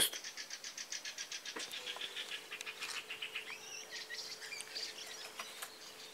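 Faint birdsong. A fast run of high repeated chirps, about ten a second, gives way to warbling notes that rise and fall. A faint steady hum sits underneath from about a second and a half in.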